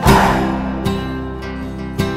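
Background music: an acoustic guitar strumming chords, with a fresh strum about once a second and no singing.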